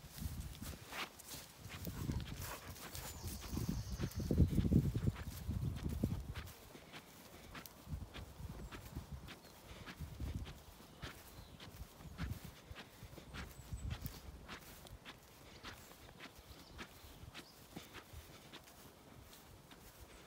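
Footsteps of a person walking across grass, a steady run of soft short steps. A low rumble on the microphone is loudest about four to six seconds in, then dies down.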